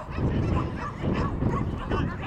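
Dogs barking repeatedly, short calls following one another in quick succession.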